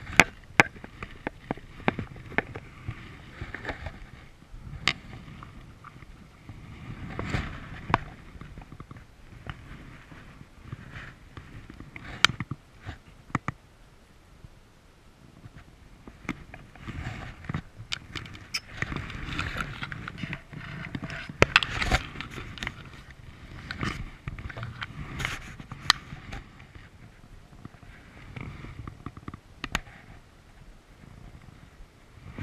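Close-up rustling, with many irregular clicks and knocks, as an angler's hands and jacket brush through riverside reeds while handling and unhooking a landed trout.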